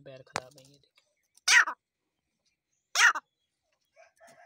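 Dakhni teetar (partridge) giving two short, loud, harsh calls about a second and a half apart. A faint voice murmurs briefly at the start.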